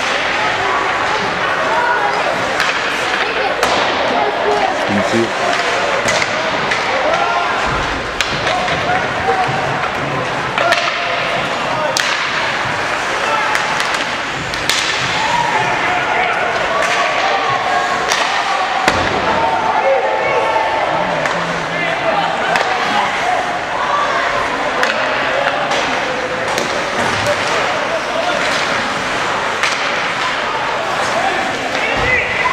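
Ice hockey game noise in a rink: sharp knocks and slams of the puck, sticks and players against the boards and glass, scattered through the stretch, over a steady background of indistinct voices.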